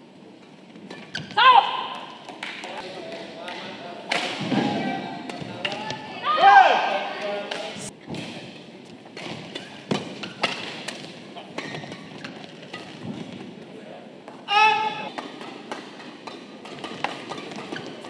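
Badminton rally: sharp racket strikes on the shuttlecock, sounding in a large hall. Three short shouts from the players break in, about one and a half, six and a half and fourteen and a half seconds in.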